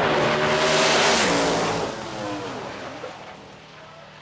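Drag race cars under full throttle running down the strip, loudest about a second in, then the engine note drops in pitch and fades as they pull away downtrack.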